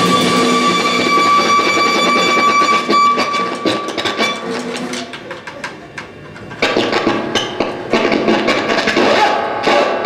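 Live electric guitar and drum kit playing loud: a held high guitar tone rings over the drums for the first few seconds, the sound thins and drops away around five seconds in, and then rapid snare and cymbal hits come back in at about six and a half seconds.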